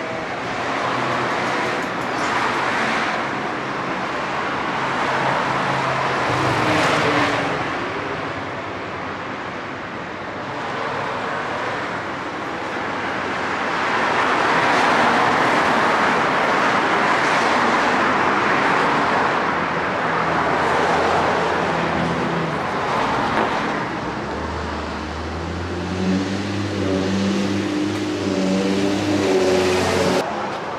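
Road traffic going by: the rush of passing cars swells and fades several times. In the last few seconds a steady engine hum from a larger vehicle joins it.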